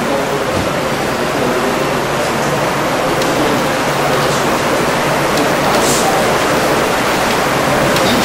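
Steady, fairly loud hiss of background noise through an open microphone, with a faint low hum underneath. A brief higher hiss comes about six seconds in.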